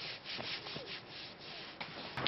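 Faint, irregular rustling of clothes as two people hold each other on a fabric sofa.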